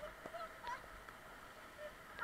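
A few brief, faint voice sounds from the rafters, short calls rather than words, over a low steady rush of river water.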